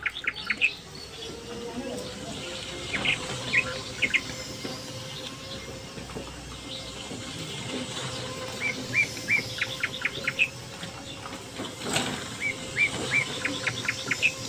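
Small birds chirping in quick runs of short repeated notes, the runs coming every few seconds. A faint steady hum lies underneath.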